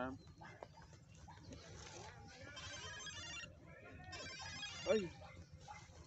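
Faint, distant chatter of people talking. About two and a half seconds in, a high, rapid trill sounds for about a second, then briefly again. A short exclamation comes near the end.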